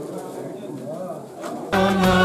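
A crowd's murmur of many voices talking at once. Near the end, loud music with singing cuts in suddenly.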